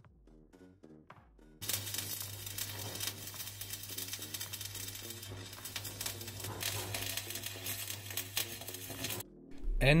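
Electric arc welding on steel: a continuous crackle and sizzle starting about a second and a half in and stopping shortly before the end, with a steady low hum from the welder under it.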